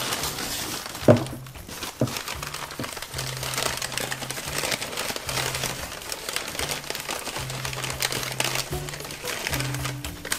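Paper wrapping crinkling and rustling as a model train car is unwrapped by hand, with many small crackles throughout. Soft background music with low notes runs underneath.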